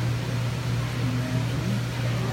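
Steady low hum of a store floor full of running aquarium tanks and their equipment, constant in level with no breaks, and faint voices behind it.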